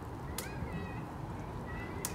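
Faint, high-pitched animal calls: a short rising call about half a second in and a shorter one near the end, over steady low background noise, with a sharp click as the first call begins.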